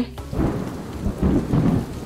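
Rain with a low rumble of thunder, coming up just after the start.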